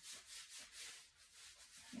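Faint rustle of a hand rubbing over the sleeve of a long-sleeved top, in repeated strokes along the upper arm.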